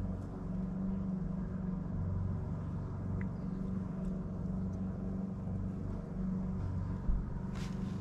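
A steady low hum made of several even tones, like a motor or machine running. There is a low thump about seven seconds in and a few light clicks near the end.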